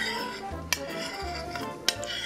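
Two sharp clicks of something striking a ceramic plate, about a second apart, as the last of the sauce is scraped off it, over background music.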